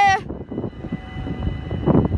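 Level-crossing warning bell ringing steadily, with a low rumble underneath.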